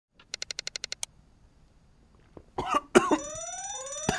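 A quick run of about ten beeps, then a man coughing and choking on a sip of water gone down the wrong pipe into his windpipe. A rising, whooping alarm sound effect starts over the coughing near the end.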